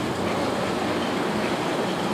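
A steady, even rushing noise at a constant level, with no speech over it.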